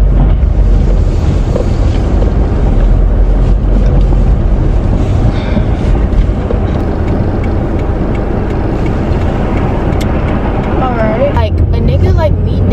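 Car cabin noise while driving: a steady low road-and-engine rumble with a rushing hiss over it. A voice starts near the end.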